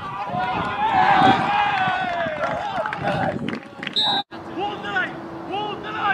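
Several voices yelling together on a soccer field, loudest about a second in as a shot goes at goal. The yelling breaks off abruptly about four seconds in, followed by quieter scattered calls over a steady low hum.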